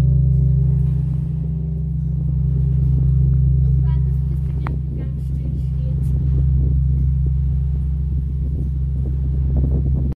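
The Pummerin, the roughly 20-tonne bronze bell with strike note C0, ringing down. No clapper strikes are heard. Its deep hum lingers, swelling and fading about every three seconds as the bell swings to rest, while the higher overtones die away.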